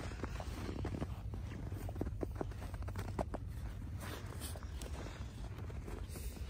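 Footsteps crunching in fresh snow: an irregular run of short crunches over a low steady rumble.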